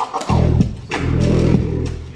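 Music played off a vinyl record on DJ turntables and a mixer, worked by hand for a scratch routine: two long held bass notes with a short sharp break between them.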